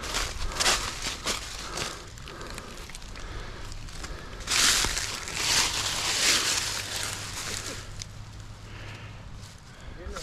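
Footsteps crunching through dry fallen leaves, with a louder stretch of rustling and crunching lasting about two seconds near the middle. A faint low steady hum runs underneath.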